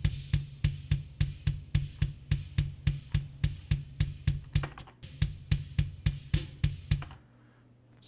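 Kick drum stem from a live acoustic drum recording playing back: steady kick hits about three a second, with snare bleed coming in behind them. A quicker run of hits from a snare roll comes near the end, then the playback stops.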